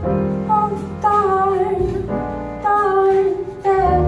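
Small jazz ensemble playing a slow ballad live: a held, gliding lead melody over piano chords and double bass.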